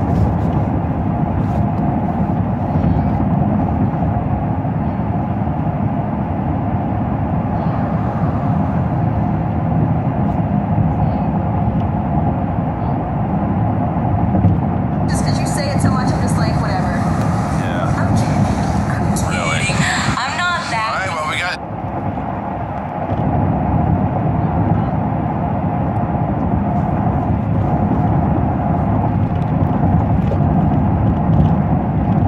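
Steady road and engine noise inside a moving car's cabin. About fifteen seconds in, a brighter, hissing sound with wavering tones joins it for about six seconds, then cuts off suddenly.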